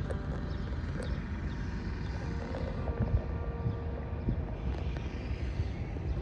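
Steady low rumble of a moving vehicle, road and engine noise, with a few faint ticks.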